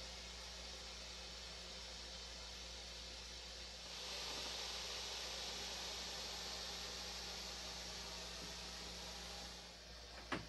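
Faint steady static hiss over a low electrical hum, with the hiss growing louder about four seconds in.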